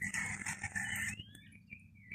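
Birds calling: a squeaky, chattering burst in the first second, a rising whistle about a second in, then a few faint short whistles.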